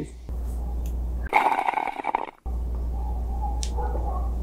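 A person slurping a sip of drink from a mug, one rough, noisy slurp about a second and a half in. A steady low hum lies under it.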